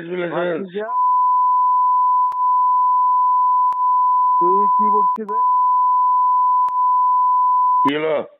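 A steady censor bleep tone, held for about seven seconds, blanking out abusive words in a recorded phone conversation. It breaks once just past the middle for about a second of the call's speech, and a few faint clicks mark the edit points.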